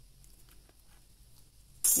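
Nearly silent, with a few faint small clicks as a craft blade trims excess cold-porcelain clay from a figurine's collar. A woman's voice starts near the end.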